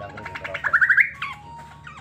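Cucak pantai bird giving a short, fast rattling trill about half a second in: a quick run of clicking notes that rises in pitch, followed by a brief held note.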